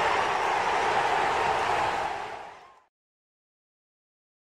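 Channel intro sound: a loud, steady rushing noise that fades out about two and a half seconds in, then silence.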